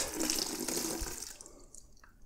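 Dirty extraction water pouring from a Bissell SpotClean Pro's plastic dirt tank into a plastic bucket, splashing into the water already in it, then tapering off and stopping about a second and a half in.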